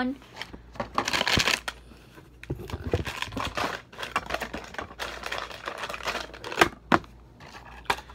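Handling of a hardcover book and cardboard cereal-box cut-outs: irregular rustling and scraping, with a louder rustle about a second in and two sharp clicks near the end.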